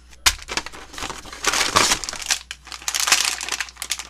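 Plastic food packaging crinkling and crackling as bags are pulled out and handled, starting with a sharp snap just after the start, with louder spells of crinkling through the rest.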